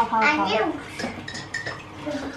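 A high voice calls out wordlessly for about the first second, then light clinks of crockery and cutlery in a kitchen.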